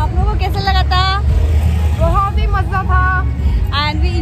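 Women's voices talking to the camera, over a steady low rumble.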